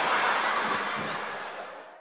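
Studio audience crowd noise, a steady wash that fades out near the end.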